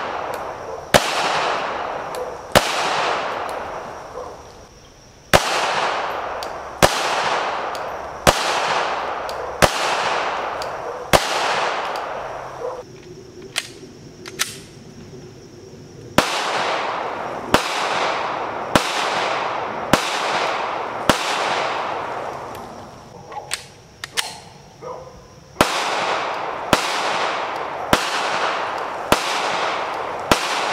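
9mm striker-fired pistols, a CZ P10C and a Glock 19 Gen 5, fired shot by shot at a steady pace of about one round every one to one and a half seconds. Each shot is followed by a long, fading echo. The firing pauses for about three seconds in the middle.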